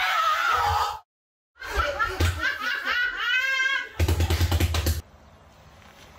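People laughing loudly in rapid bursts, with a sharp break about a second in; a fast run of ha-ha pulses near the end.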